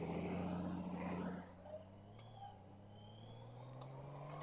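Honda Gold Wing motorcycle's engine humming low and faintly as the bike pulls out onto the road, louder for the first second and a half, then holding a steady note that rises slowly in pitch.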